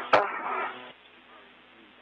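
Spacewalk radio loop: a click and a short burst of static as a transmission closes, then a faint steady radio hiss.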